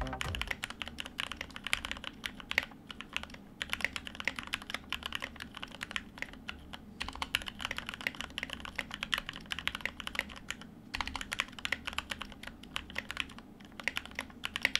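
Typing test on a GK61x 60% keyboard fitted with hand-lubed Gateron Milky Yellow linear switches: a fast, continuous run of keystrokes, broken by a few brief pauses.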